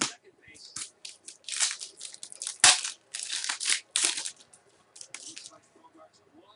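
Trading card pack wrappers being torn open and crinkled: a run of quick, sharp rips and crackles, busiest through the middle, with the loudest rip about two and a half seconds in.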